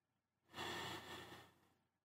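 A person drawing one audible breath in, about a second long, starting half a second in and fading out.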